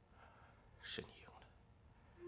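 Near silence, broken about a second in by one brief, faint, breathy vocal sound from a person.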